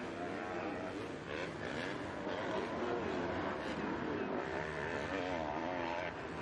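Several motocross bike engines revving, their pitch rising and falling again and again as the riders work the throttle through the corners and accelerate away.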